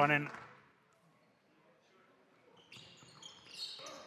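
The tail of a spoken line, then near silence for about two seconds, then faint basketball game sounds fade back in, with a ball bouncing on the court.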